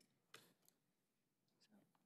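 Near silence with a few faint clicks, the clearest about a third of a second in.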